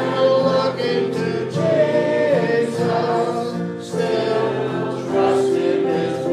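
A hymn sung by a woman on a microphone with the congregation singing along, held notes moving from one pitch to the next over a steady instrumental accompaniment.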